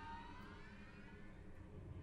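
Very quiet passage of an orchestral film score: soft held high notes, some gliding slowly upward, over a low rumble.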